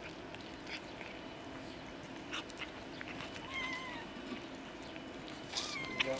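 Cats eating shredded chicken breast, with many small wet clicks and smacks of chewing. Two short, wavering mews come through, one about three and a half seconds in and one near the end.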